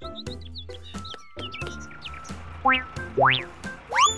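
Cartoon background music with short bird-like chirps, then two rising whistle-like sweeps near the end.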